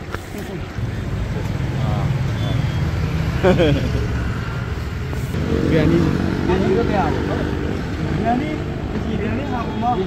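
Men's voices talking over road traffic. A vehicle's low engine rumble swells about a second in and carries on for a few seconds before easing.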